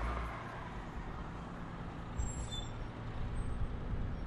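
Steady background noise, a low rumble with an even hiss over it, with a faint brief high squeal a little past two seconds in.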